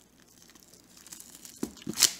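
Plastic shrink wrap crinkling as fingers handle and pick at it, faint at first and growing, with a couple of sharp crackles near the end.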